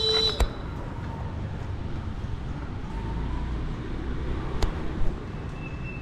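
Outdoor street ambience: a steady hum of road traffic, with a short pitched beep at the very start and a few sharp clicks later on.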